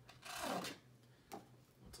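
Damascus-steel flipper knife blade slicing once through a sheet of thick paper, a scraping cut lasting under a second, followed by a brief rustle of the sheet. It is a test of how sharp the edge is.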